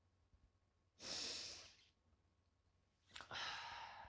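A man sighing twice, deep breaths out about a second in and again about three seconds in, with near silence between.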